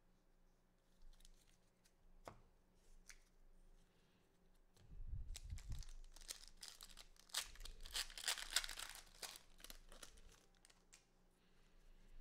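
A trading card pack wrapper being torn open and crinkled by hand, with a few faint clicks first and then tearing and crinkling from about five seconds in until about ten seconds in.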